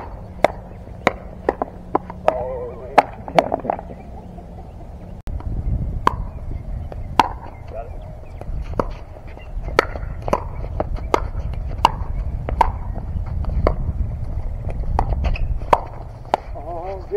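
Pickleball paddles hitting a plastic pickleball back and forth in fast doubles rallies: a string of sharp pocks, about one to two a second, across two rallies with a cut between them about five seconds in.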